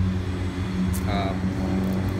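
A car engine idling with a steady low hum.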